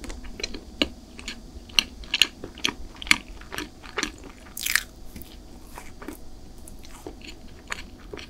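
Close-miked chewing of a chocolate sponge cake bar, with irregular wet mouth clicks and crackles.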